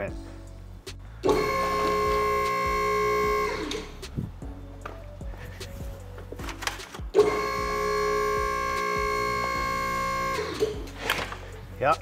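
Electric motor of a hydraulic car lift's pump running in two steady bursts, about two seconds and then about three seconds, raising the car.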